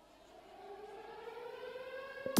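Air-raid siren sound effect played over the PA system, winding up: one tone rising slowly in pitch and swelling from faint.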